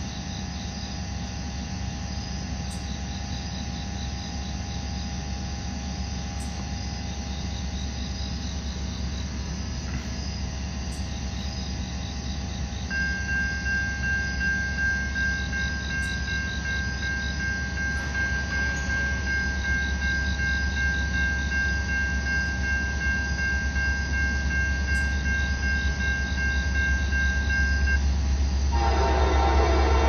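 Low rumble of approaching EMD SD60E diesel locomotives growing louder over insects chirping; about halfway through a steady high-pitched crossing warning tone starts and holds until near the end. Just before the end a loud Nathan K5LA five-chime air horn blows as the locomotives near the crossing.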